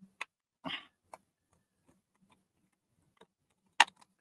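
Watercolour half-pans being picked out of a palette tray: a few light clicks and taps as they knock against the tray and each other, the sharpest one just before the end.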